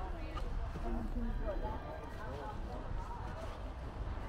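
Indistinct voices of people talking on the street, unintelligible, over a low steady street rumble.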